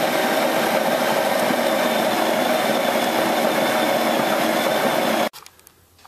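Motor-driven grain mill cracking malted barley for a beer mash: a steady motor whine over the grinding rattle of grain, cutting off suddenly about five seconds in.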